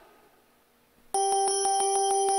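About a second of near silence, then a bell suddenly starts ringing rapidly and steadily: a game-show win cue marking that the contestants have won.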